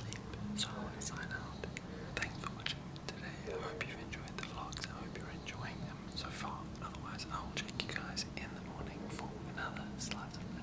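A man whispering steadily, keeping his voice down because someone is asleep in the room.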